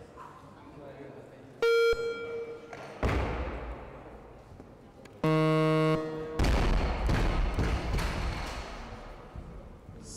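Weightlifting competition signals and a barbell snatch. A short electronic beep comes about two seconds in, as the clock passes 30 seconds, and a rush of noise follows a second later as the lift is made. A buzzer then sounds for most of a second, the referees' down signal for a good lift, and the loaded bumper-plate barbell is dropped onto the platform with a loud thud and a fading rattle and knocks.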